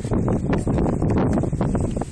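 Wind buffeting a phone's microphone: a loud, rough low noise broken by short crackles.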